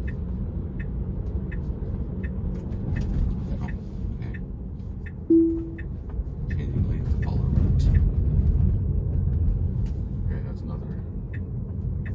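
Inside a Tesla's cabin while it drives through a left turn: steady road and tyre rumble with the turn signal ticking about three times every two seconds. About five seconds in, a single short chime sounds and fades quickly, then the road noise grows as the car speeds up.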